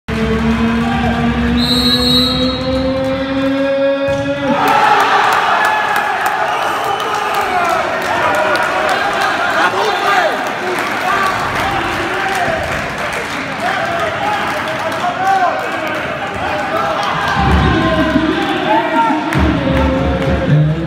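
Handball crowd in a sports hall. About two seconds in, a referee's whistle blows for a 7-metre throw over a held, slowly rising note. Just under five seconds in, the crowd erupts and keeps shouting and chanting, with sharp claps and bangs.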